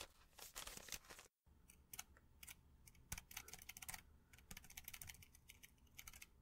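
Faint, irregular light clicks and small scratches, as of small objects being handled, scattered through near silence.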